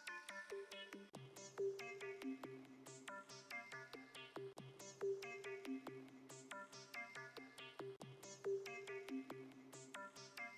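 Quiet background music: a looping melody of short, chiming electronic notes over a low held bass, the phrase repeating about every three and a half seconds.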